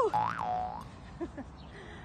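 A short comic boing-like sound effect. It rises and then falls in pitch and settles on a lower held note, lasting under a second.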